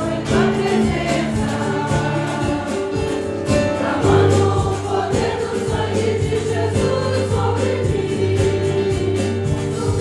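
Many voices singing a Portuguese hymn together with a church orchestra accompanying them, steady and full throughout.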